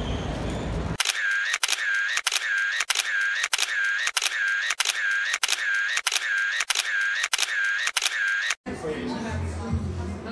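A camera shutter sound repeated about a dozen times, roughly every two-thirds of a second, starting about a second in and cutting off suddenly near the end. It sits over the photos in place of the street sound. Before it there is street noise; after it, voices and shop chatter.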